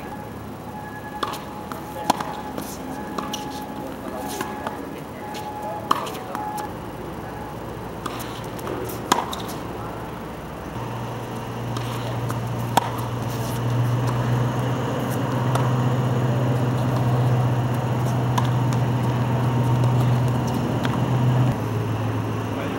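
Tennis balls struck by racquets in a rally: single sharp pops a second or several seconds apart. A low steady hum comes in about halfway and grows louder.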